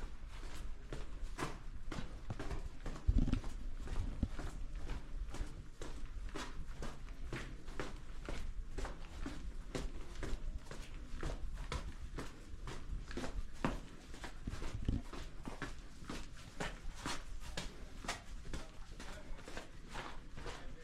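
Small mine train running along a narrow-gauge rail track: its wheels clatter over the rails in a fast, uneven run of clicks and knocks, several a second, over a low steady rumble. A heavier knock comes about three seconds in.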